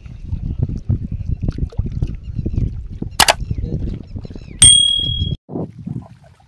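Wind rumbling on the microphone, a sharp click about three seconds in, then a loud ringing ding, the loudest sound, that stops abruptly under a second later.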